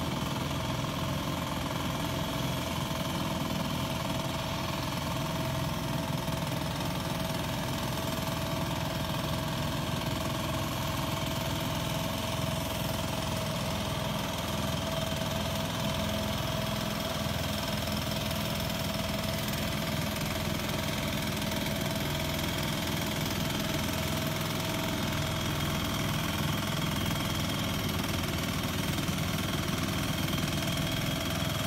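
The small engine of a two-wheel hand tractor (power tiller) running steadily under load as it pulls through a muddy rice paddy.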